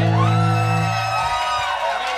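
A live rock band's last chord ringing out and dying away about a second in, with a high held note that rises, holds and then falls. Crowd whoops come in near the end.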